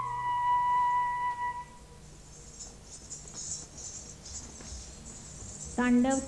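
A flute's long closing note of a Manipuri dance accompaniment, held steady and then dying away about two seconds in, leaving only faint hiss.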